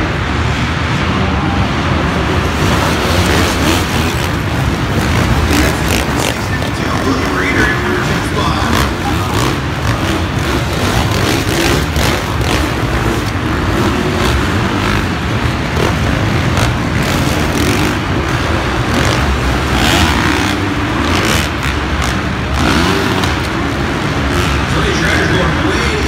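Several 450-class motocross bikes racing around an indoor arenacross track, their engines revving continuously. The sound carries through a large arena, mixed with an announcer's voice over the public address.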